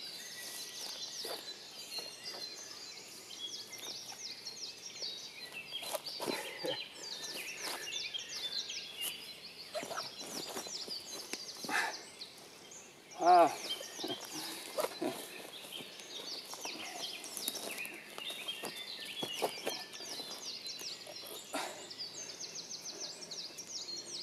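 Small songbirds chirping and singing continuously in a conifer forest. About halfway through comes a short, loud vocal shout, with a few soft knocks and rustles scattered around it.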